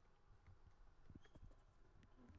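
Near silence: faint outdoor room tone with a few soft, short taps about halfway through.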